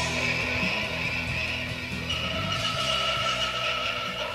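Psychedelic underground rock from a 1989 cassette recording, dying away and getting steadily quieter. Long held high notes come in about halfway through.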